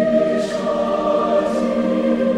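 A choir singing sustained, held chords in a slow recorded Christmas piece, with two brief soft hissy swells about half a second and a second and a half in.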